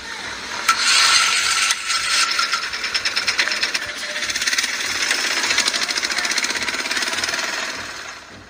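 Loud airliner cabin noise in flight: a steady rushing hiss with a fast rattle running through it, fading away near the end.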